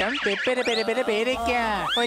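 A shrill cartoon voice in a fast run of short cries that swoop sharply up and down in pitch, ending in a long high rising cry.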